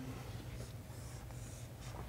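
Chalk writing on a blackboard: a few faint scratchy strokes over a low, steady room hum.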